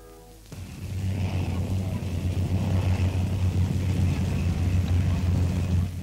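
A held music chord dies away in the first half second, then the steady low drone of a propeller aeroplane's piston engine in flight takes over.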